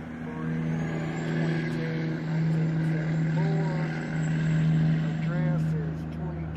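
A vehicle engine idling with a steady low hum, a little louder through the middle.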